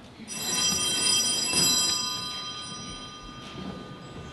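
A bell is struck and rings with several clear, high tones that die away over about three seconds.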